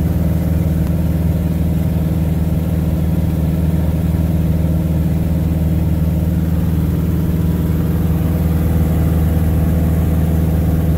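Piper Super Cub's piston engine and propeller running steadily in flight, heard from inside the cockpit.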